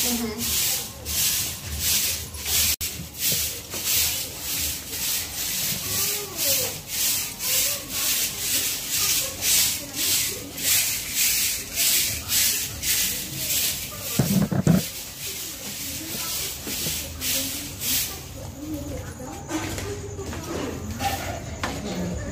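Hand broom sweeping concrete stair steps in brisk strokes, about two a second, each a scratchy swish; the strokes thin out and fade after about 18 seconds. One dull thump about 14 seconds in.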